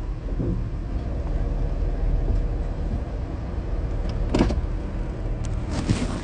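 A car's steady low rumble, with one short knock a little over four seconds in and a few light clicks near the end.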